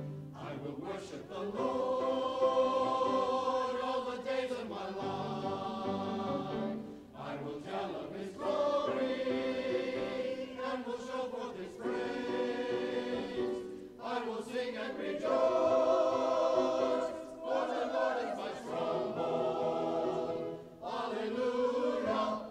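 Mixed-voice church choir singing in phrases a few seconds long, with short breaks between them.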